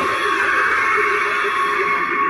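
Spirit Halloween Mr. Dark animatronic's built-in sound effect playing from its speaker as it stands fully raised: one long, steady, high-pitched cry.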